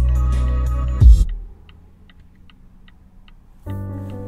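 Music over a Bowers & Wilkins car sound system: a bass-heavy lo-fi track ends with a final hit about a second in, then a quiet pause with faint ticking, and the next track, a classical piece, starts near the end.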